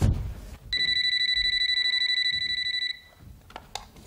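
Cordless telephone's electronic ringer trilling once for about two seconds: an incoming call. A low thump comes at the very start, and a few light clicks of the handset follow near the end.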